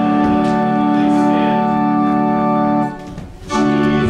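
Church organ playing a hymn in held, sustained chords, with a brief break in the sound about three seconds in before the next chord sounds.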